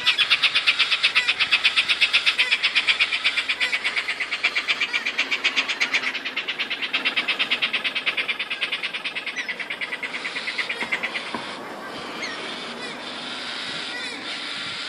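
Galah (rose-breasted cockatoo) call: a rapid, even string of harsh pulses, several a second. It starts suddenly, fades toward the end and stops about eleven seconds in.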